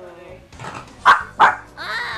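A small dog barking twice in quick succession, about a second in.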